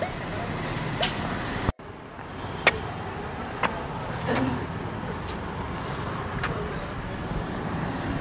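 Outdoor ambience with a steady hum of road traffic in the background and a few scattered short clicks. The sound drops out for an instant about two seconds in, at a scene change.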